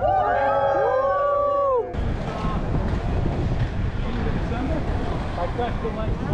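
A group of people whooping and cheering, several voices in long held calls, which cuts off suddenly about two seconds in. Then a steady rushing noise of wind on the microphone and inline skate wheels rolling on asphalt, with faint voices.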